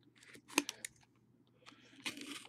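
Box cutter slicing the plastic wrap of a sealed trading-card box: a quick run of short scratchy cuts and sharp clicks about half a second in, then quiet handling.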